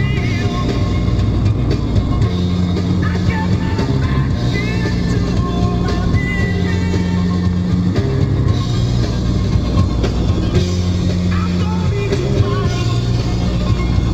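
Rock music playing loudly, with a bass line of held notes that change every second or two.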